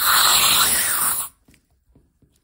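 Nitrous oxide gas hissing out of a pierced cream charger through a charger breaker: a loud, steady hiss that cuts off suddenly about a second and a quarter in, followed by a couple of faint clicks.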